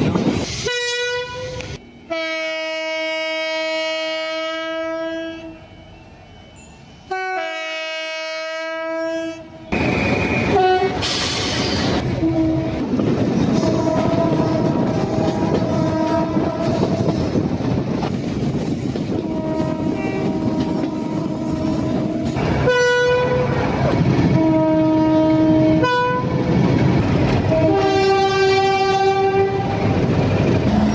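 Train two-tone horn sounding again and again: long held blasts in the first ten seconds, one stepping from a higher note to a lower one. After that come shorter blasts over the steady rumble and clatter of coaches running on the track.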